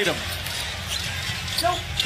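Basketball dribbled on an arena hardwood floor, heard through a TV broadcast over a steady crowd haze.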